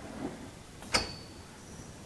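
A single sharp metallic click about a second in, from the CNC rotary tube cutter's mechanism running in automatic, followed by a brief high ringing tone. Otherwise only faint machine-room noise.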